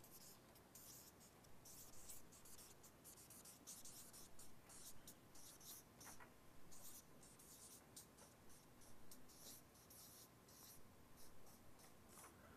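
Faint, irregular scratching of pens writing on paper, in an otherwise near-silent room.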